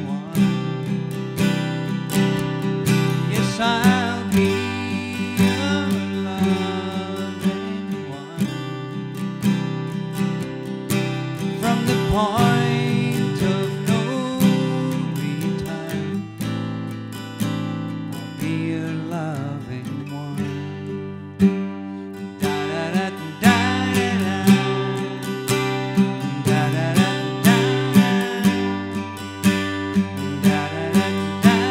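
Two acoustic guitars playing an instrumental passage of a folk song: steady strummed chords with a second guitar picking a lead line over them, with a few sliding notes.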